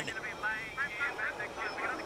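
Faint, high-pitched voices over a steady rushing noise.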